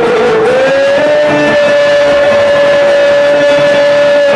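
Cretan folk music: a single long high melody note rises into place about half a second in and is held steady, over plucked laouto accompaniment.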